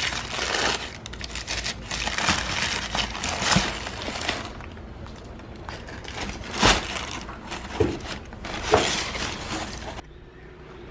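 Tissue paper rustling and crinkling as hands unwrap shoes in a cardboard shoebox, in irregular bursts with a few louder crackles, about three and a half, six and a half and nine seconds in.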